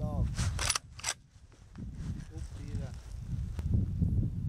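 Rifle bolt being worked: a few sharp metallic clicks in the first second as the action is cycled and the spent case ejected.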